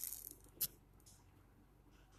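Faint, sharp tap of a key being typed on a smartphone's on-screen keyboard a little over half a second in, after a short hiss at the start.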